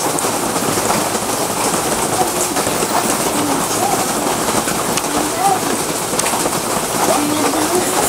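Steady hiss of rain falling in the background, with a few faint, short pitched sounds over it.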